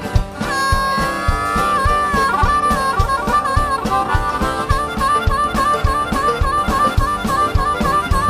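Harmonica taking a solo over a live acoustic bluegrass band: one long held note, then a fast, steady warble between two notes, with the band's bass and drum beat running underneath.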